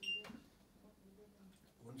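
A single short, high electronic beep from a stairlift's controls as its programming is worked, followed by a small click.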